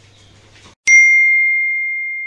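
A single bell-like "ding" sound effect: one clear high tone struck about a second in, ringing on and slowly fading.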